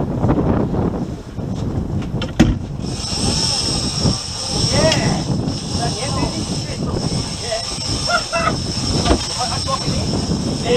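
Outboard boat motors running under wash and wind noise, with a steady high whine coming in about three seconds in and short excited shouts from the crew.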